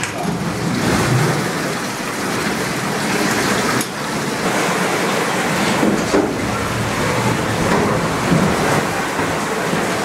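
Water gushing and splashing as the steam beam engine's pump lifts it from the well into a cast-iron cistern and troughs, a loud steady rush.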